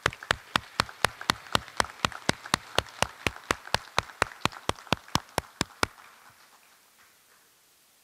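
A man claps his hands steadily close to a podium microphone, about four sharp claps a second, with softer audience applause underneath. The claps stop about six seconds in, and the applause fades out soon after.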